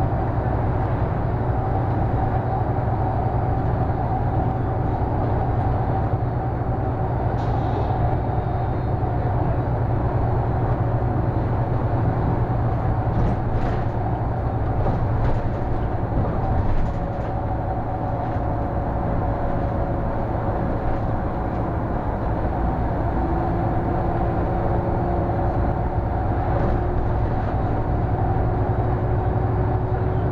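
City bus running along a road, heard from the driver's cab: a steady low engine and tyre rumble with a faint drivetrain whine that shifts in pitch, and a slight easing in loudness about halfway through.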